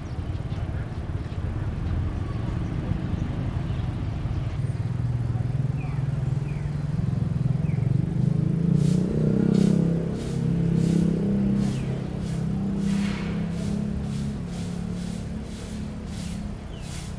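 A low motor drone that swells through the middle and eases off near the end, joined from about nine seconds in by a regular run of short scraping strokes, about two a second.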